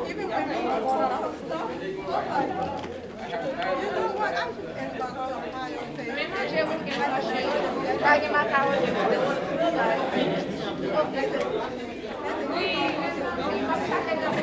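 Crowd chatter: many people talking at once at tables in a large hall, a steady din of overlapping conversation with no one voice standing out.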